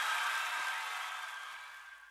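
The closing crash of the song ringing out, a high hissy shimmer that dies away evenly into silence near the end.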